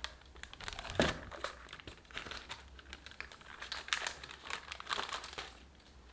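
Parchment paper crinkling and rustling in irregular bursts as a rolled sheet of tart dough on it is handled and turned over onto a tart pan, with a thump about a second in.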